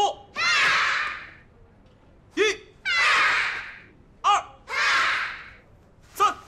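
A taekwondo instructor calls out a count, and each call is answered by a class of young children shouting together. There are three calls and three answers, about two seconds apart.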